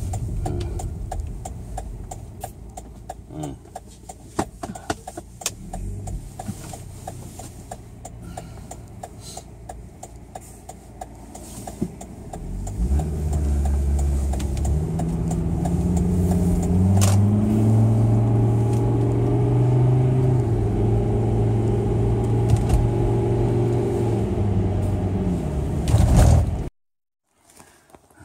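Car engine and road noise heard from inside the cabin while driving. About halfway through the engine gets louder, its pitch stepping upward as the car accelerates, and the sound cuts off suddenly near the end.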